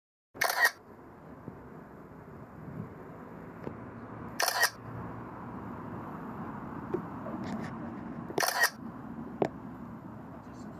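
Camera-shutter sound from the drone's controller app as the DJI Mini 3 Pro takes each hyperlapse frame: three sharp clicks about four seconds apart, over a steady background hiss.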